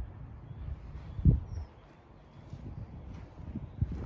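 Low, uneven rumble of wind and handling noise on a hand-held phone microphone as it is carried around the van, with one sharp thump about a second in and a couple of lighter knocks near the end.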